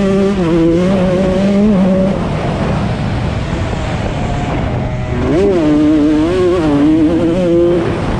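125cc two-stroke motocross bike engine revving hard under throttle, held high for about two seconds, easing off for a few seconds, then climbing sharply again about five seconds in, with the pitch rising and falling as the throttle is worked.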